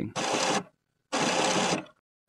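HP Deskjet F4180 all-in-one printer's rubber paper pick rollers rotating in two short spurts, each about half a second long with a silent gap between. The rollers are turning as the printer tries to pick up paper that it has not yet gripped.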